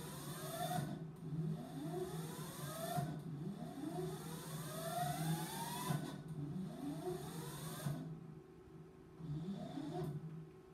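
Drive motor of an Instron universal testing machine whining, its pitch rising again and again about once a second over a steady hum, as the crosshead is jogged into position to load a specimen.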